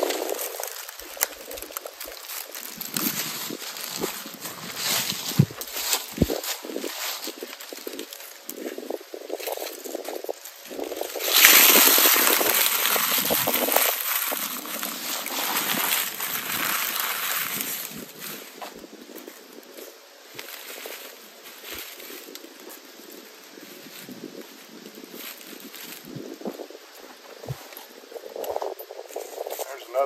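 Dry kudzu leaves being crumpled and crushed in the hands into a tinder bundle: an on-and-off crackling rustle, loudest and most continuous for several seconds in the middle.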